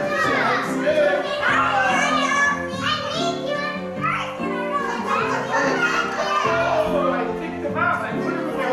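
Excited children's voices, calling and chattering, over background music with held notes that change every second or so.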